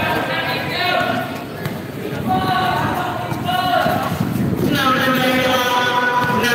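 Voices of players and spectators calling out across a basketball court, with a basketball bouncing on the concrete floor as it is dribbled.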